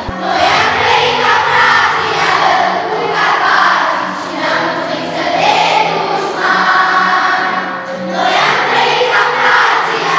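A large group of schoolchildren singing together in chorus in Romanian, in long held phrases.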